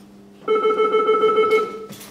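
An electronic ringer or alarm sounding once, a little after the start, for about a second and a half, as part of a repeating on-off pattern. It has a fast-warbling low tone under steady high tones.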